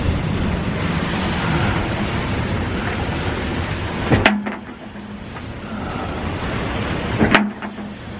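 Steady rushing of wind and sea around a sailing catamaran in strong wind and big swells, with two sharp knocks about four and seven seconds in. After the first knock the low rumble drops away.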